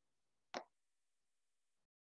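Near silence, with one brief soft pop about half a second in. The faint background hiss then cuts off abruptly near the end.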